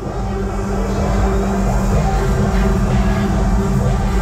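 Loud music with heavy bass, played over a fairground ride's loudspeakers.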